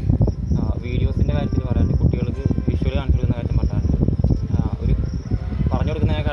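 A steady, high-pitched insect drone, like a cricket's chirr, runs under a man talking in Malayalam.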